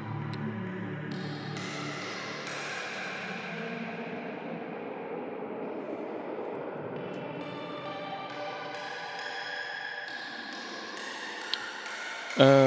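Ambient electronic music playing back from an Ableton Live session: sustained synth chords that shift every few seconds over a hissing wash that swells in the middle.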